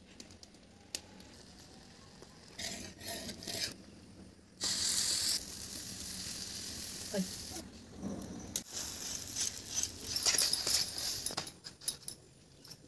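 Chapati batter made with jackfruit juice meeting a hot iron tawa: a sudden loud sizzle about four and a half seconds in that settles into a steady sizzle, then a second spell of crackly sizzling in the last few seconds. Quieter handling sounds come before the first sizzle.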